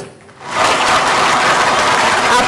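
Audience applauding. The applause comes in about half a second in, after a brief lull, and then stays at an even level.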